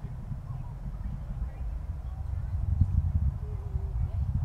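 Distant Atlas V rocket's engines heard from far off as a low, crackling rumble that swells toward about three seconds in.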